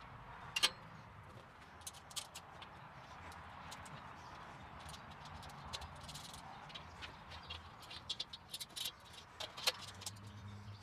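Faint, scattered clicks and clinks of metal parts being handled and fitted as a kettle grill is assembled by hand, with a sharper click about half a second in and a flurry of small clicks near the end.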